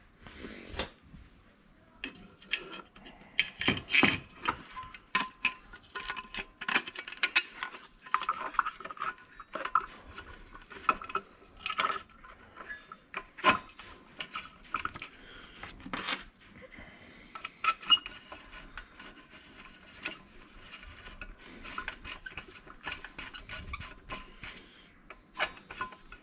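Scattered small clicks, taps and rubbing as the plastic air-filter cover of a brush cutter engine is pressed into place and screws and a screwdriver are handled to fasten it.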